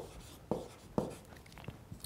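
Stylus writing on a tablet screen: a few light taps about half a second apart as the letters are put down.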